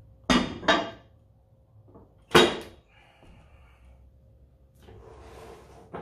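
Metal weight plates clanking as they are handled and stacked on a loading pin: two quick clanks, then a louder clank a couple of seconds in with a brief metallic ring, and a scraping sound near the end.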